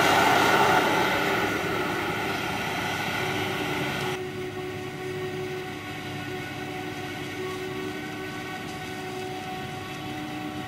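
Krone Big X 650 forage harvester running at work chopping maize, with the tractor hauling the trailer alongside: a steady mechanical drone with a low hum. It fades over the first few seconds, then drops abruptly about four seconds in and carries on steadily, quieter.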